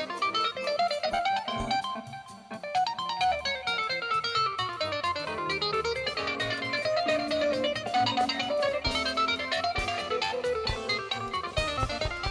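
Live jazz trio: a Yamaha strap-on keyboard solos in fast runs of notes that sweep up and down, over upright bass and drums.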